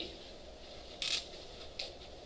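Felt-tip marker writing on a whiteboard: a short scratchy stroke about a second in and a fainter one near the end, against quiet classroom room tone.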